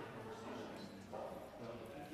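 Faint, indistinct conversation among a few people, with no words clear enough to make out.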